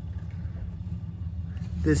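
A steady low mechanical hum, with a voice starting near the end.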